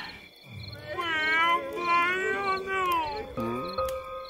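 A long, drawn-out wailing cry that bends up and down in pitch for about two seconds. Slow music with held notes comes in near the end.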